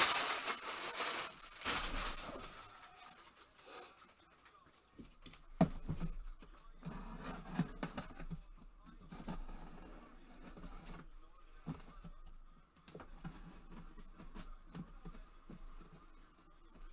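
Plastic wrap crinkling as it is handled for the first couple of seconds, then a quiet room with occasional light taps and knocks.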